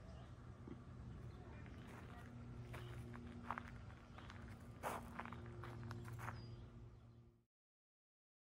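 Faint footsteps of someone walking while filming, a few soft steps about three to six seconds in, over a steady low hum. All sound cuts off about seven and a half seconds in.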